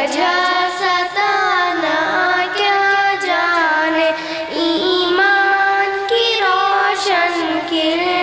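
Two young girls singing an Urdu nazm together into microphones, holding long melodic notes in a chant-like tune.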